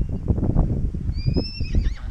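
A wild pony whinnying once about a second in: a thin, high call that rises slightly and then falls away. Under it, wind buffets the microphone with a constant low rumble and knocks.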